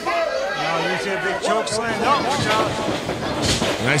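Voices shouting and chattering, from a crowd in a hall, with a dull thud on the wrestling ring's mat near the end.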